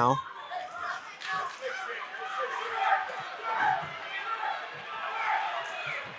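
Distant voices calling out around a boxing ring in a large hall, faint and overlapping.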